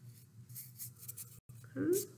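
Faint rustling of an accordion-folded sheet of green construction paper handled between the fingers, a few soft irregular crinkles.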